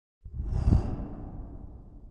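A whoosh sound effect for a logo reveal: it swells in suddenly about a quarter second in, is loudest a little before the middle with a deep rumble underneath and a short high hiss on top, then dies away slowly.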